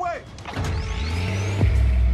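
Action-film sound mix over music: a deep rumble swells with a rising whine, then a heavy low boom lands about one and a half seconds in and keeps rumbling as ice is blown apart.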